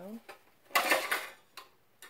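A brief clatter of small hard objects being handled, about a second in and lasting about half a second.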